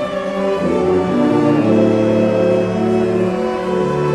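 Orchestra with a brass section of trombones, French horn and euphonium playing long sustained chords, the low notes shifting a few times.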